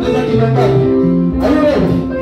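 Live gospel praise music: a band with guitar and a bass line stepping through held low notes, with a man singing lead into a microphone.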